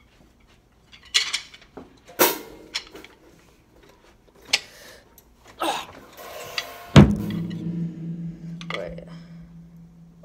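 Clatter and knocks of someone moving around a drum kit, then a single loud drum hit about seven seconds in that rings on with a low steady tone.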